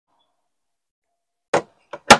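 Silence, then about one and a half seconds in a single short knock from a wood-veneer access panel being set back over the van's battery compartment.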